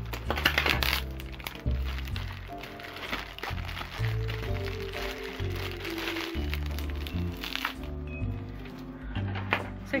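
Thin plastic bag crinkling and rustling as it is handled and dolls are pulled out of it, with sharp crackles in the first second. Background music with a low melodic line plays throughout.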